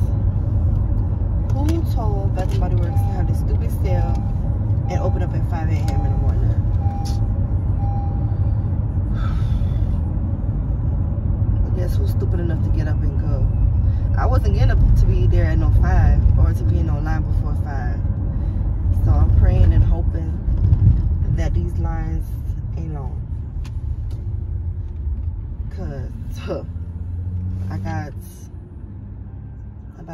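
Car cabin noise while driving: a steady low road rumble under talk, dropping away sharply near the end.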